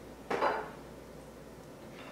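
A single short knock of kitchen things being handled on the countertop, about a third of a second in, then quiet room tone.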